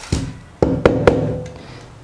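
The hollow plastic dust bin of a handheld car vacuum cleaner knocks against a hard countertop four times to shake out the dirt it has collected. Each knock has a short hollow ring.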